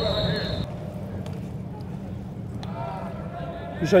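Indistinct voices over a steady low hum, with a short steady high-pitched tone in the first moment.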